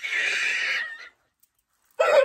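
A woman's high-pitched shriek, squealing and breathy, lasting about a second; then the sound cuts out to dead silence.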